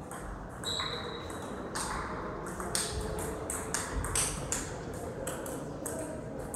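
Table tennis rally: the ball clicks sharply off the bats and the table several times a second. A thin high squeak lasts about a second, starting early in the rally.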